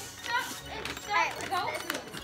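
Young children's excited high-pitched voices, short exclamations and chatter overlapping.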